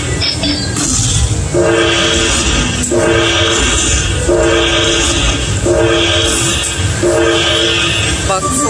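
Dragon Link 'Panda Magic' slot machine bonus-round sound effects: a held chord of several tones with a bright shimmer above it, repeating about every 1.3 seconds as the coin values are collected and the win meter counts up, over a steady low rumble.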